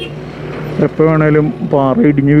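Road and traffic noise for just under a second, then a voice singing in long, wavering held notes.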